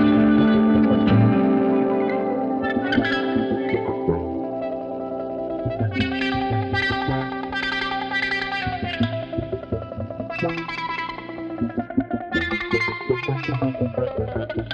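Background music led by a guitar, with held notes and a few gliding pitch bends.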